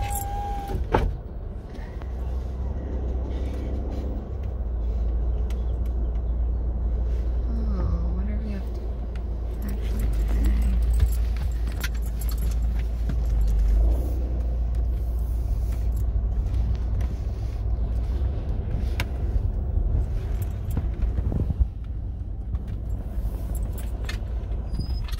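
Car cabin noise while driving slowly: a steady low rumble of engine and tyres, heard from inside the car.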